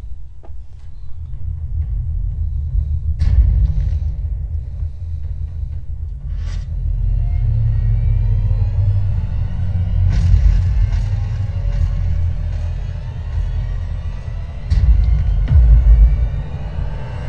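Cinematic sound design from a superhero-style intro film: a deep, steady rumble under music, with sharp hits about three and six seconds in and a louder surge of rumble near the end.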